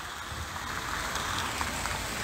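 Steady outdoor background noise, an even hiss with a low rumble underneath, picked up on a phone microphone in an open square.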